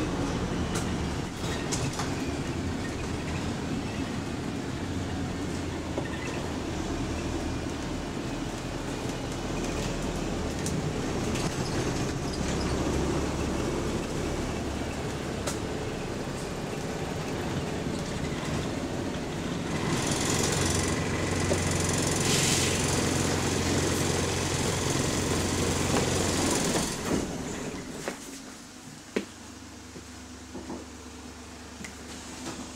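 Interior running noise of bus WS116 on the move: a steady engine drone and road noise whose low note shifts with the engine speed, with a louder hissing stretch about two-thirds of the way through. Near the end the noise falls away as the bus slows and stops, leaving a quieter low hum, with one sharp click just before the end.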